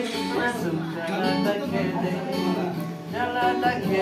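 A man singing along to an acoustic guitar played with a capo.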